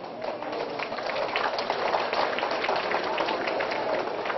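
A group of people applauding with hand claps, swelling within the first second and then carrying on steadily.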